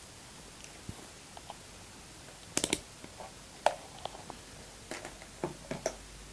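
Irregular small clicks and light knocks from handling the camera and the gear on the table, over a faint steady hiss. The loudest is a quick cluster of clicks about halfway through.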